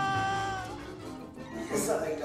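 A man's long, high-pitched scream, held on one pitch and sinking slightly before trailing off under a second in. Near the end another cry begins.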